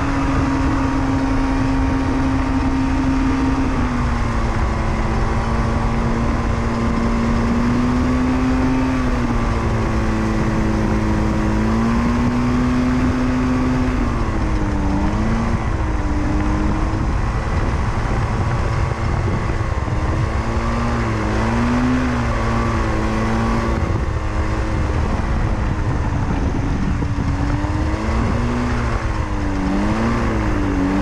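Powered parachute's Rotax 503 two-stroke twin engine and pusher propeller running at low throttle while the cart rolls on the ground. The pitch holds steady at first, then dips and rises again and again from about halfway as the throttle is eased and opened.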